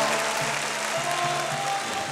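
Audience applauding, with soft background music holding a few sustained notes underneath.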